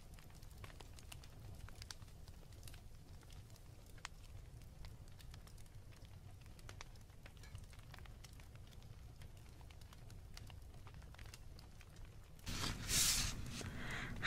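Quiet room tone with a low steady hum and faint scattered clicks, then, near the end, a paper page of a picture book being turned over with a brief rustle.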